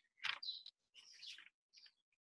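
Faint bird chirping: a few short, high calls.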